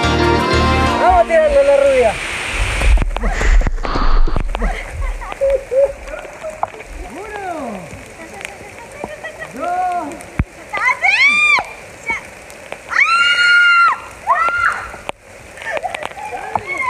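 A person on a big rope swing letting out repeated whooping, shrieking cries that rise and fall in pitch with each arc of the swing, several reaching a high scream near the end. A loud low rumble comes a few seconds in, and background music fades out in the first second.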